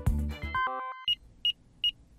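Electronic news-ident sound: a beat of background music ends in a quick climbing run of short synth blips, followed by a steady series of short, high beeps about two and a half a second.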